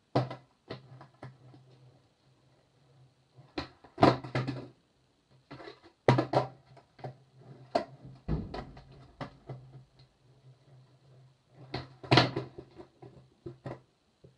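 Skateboard clattering on a concrete floor during flip-trick attempts: repeated sharp clacks and knocks of the tail popping and the deck and wheels slapping down, loudest about four, six and twelve seconds in. A faint steady low hum runs underneath.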